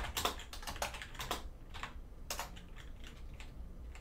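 Typing on a computer keyboard: a run of irregularly spaced keystrokes, fairly quiet.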